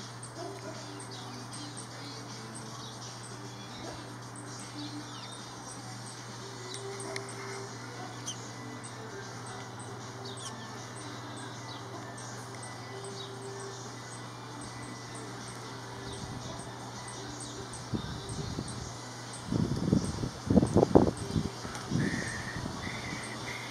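House sparrows chirping faintly and rapidly over a steady low hum. Near the end come a few seconds of loud, irregular low rumbling bursts.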